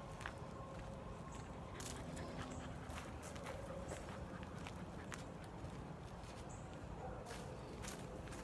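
Quiet footsteps and scattered light clicks of a person walking a dog on a leash over asphalt, set against a steady outdoor background hiss.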